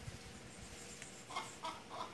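Chickens clucking faintly, with three short clucks in quick succession in the second half.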